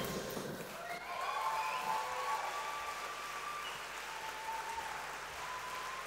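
Theatre audience applauding steadily, fairly quietly, with a few faint cheering calls rising over the clapping.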